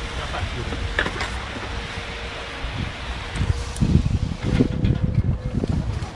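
Wind buffeting the microphone in uneven low gusts, strongest about four to five seconds in, over a faint steady hum.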